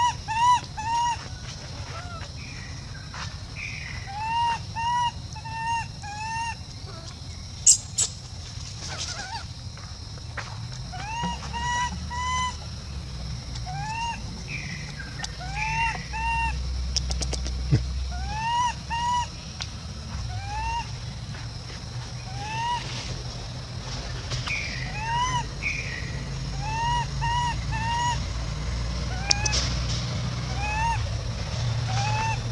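Infant long-tailed macaque calling: short cries that rise and fall in pitch, in quick runs of two to four, again and again. A low rumble runs underneath and grows louder partway through.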